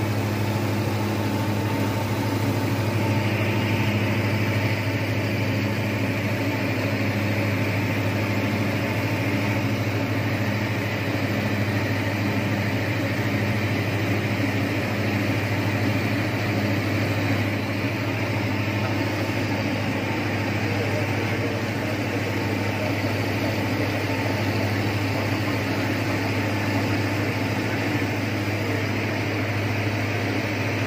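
Single-engine light aircraft's engine and three-blade propeller running steadily in cruise flight, a constant low drone heard inside the cockpit.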